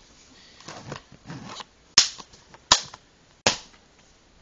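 Plastic DVD cases being handled: some soft rustling and shuffling, then three sharp snaps or clacks about three-quarters of a second apart in the second half.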